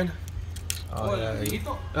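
Men's voices talking briefly, over a steady low hum, with a few light clicks.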